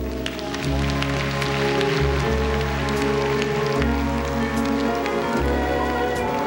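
Live band playing a slow instrumental passage, with long held low notes that change about every two seconds and a bright washing noise over the top.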